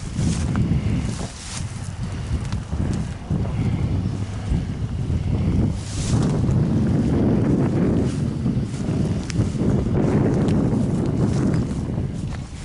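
Wind buffeting the microphone, a loud low rumble that rises and falls in gusts, strongest in the second half, with a few faint clicks and rustles.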